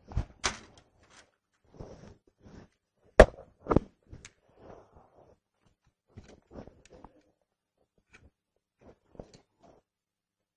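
Scattered knocks and thuds of equipment being handled and set down: two sharp thuds near the start, the loudest pair about three seconds in, then softer knocks and clicks.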